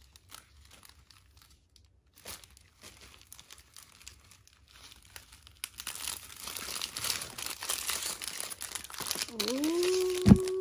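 Crinkly plastic packaging being handled: faint and sparse at first, then a steady, dense crinkling from about halfway in.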